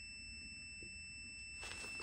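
A faint, steady, high-pitched electronic tone held at one pitch, over low background hiss.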